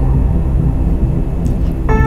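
A low, steady rumbling drone from a horror film's electronic score. Near the end, a sustained synthesizer chord of several held tones comes in over it.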